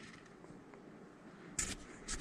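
Near silence, room tone only, for about a second and a half, then a short hiss and a second fainter one near the end.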